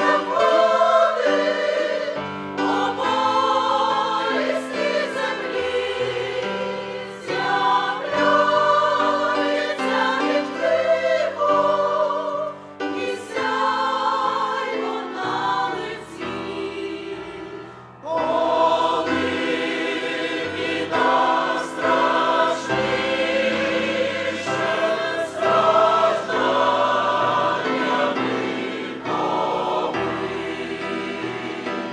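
Large mixed choir of men's and women's voices singing a hymn in parts, phrase by phrase, with a brief lull just past the middle.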